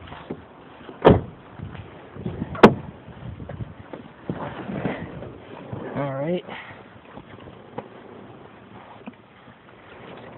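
Rustling and handling noise as a person climbs into a car, with two sharp knocks, one about a second in and a louder one about two and a half seconds in. There is a brief grunt-like voice sound around six seconds in.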